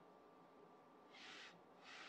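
Near silence: faint room tone with a thin steady tone. Two short soft hisses come in the second half, the second just before speech begins.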